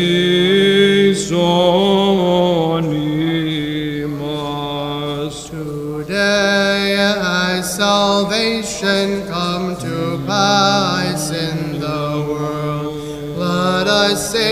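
Church chanters singing a drawn-out, melismatic Byzantine chant, one voice holding a low steady note beneath the slowly winding melody.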